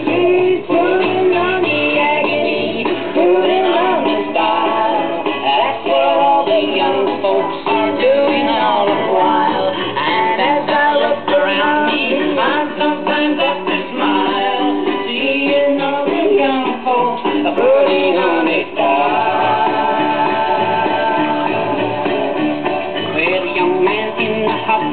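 A 78 rpm record playing on a BSR UA8 Monarch record changer in a Portadyne record player: a song with singing and a band, heard through the player's own speaker, with a dull, old-record sound lacking the top end.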